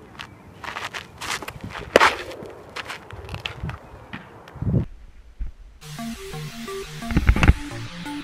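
Live outdoor sound of a baseball pitch on a dirt infield: scuffs and a sharp knock about two seconds in, then a low thump. About six seconds in, electronic music with a steady beat begins.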